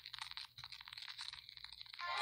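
A brief drop-out in the song, nearly silent apart from faint, rapid crackling clicks.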